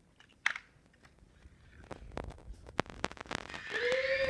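Clicks and rustling from handling, with one sharp click about half a second in and a denser run of clicks over the second half. Near the end a voice starts a long held note.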